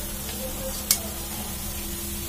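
Browned chopped onions and green chillies sizzling in hot oil in a frying pan, with a steady low hum underneath and one sharp click about a second in.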